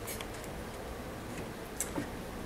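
Room tone picked up by a headset microphone during a pause, with a few faint short clicks, the sharpest near the end, like small mouth or lip clicks.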